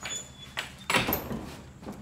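Wooden plank door being worked by hand: a short click, then a louder knock and rattle about a second in, and another click near the end.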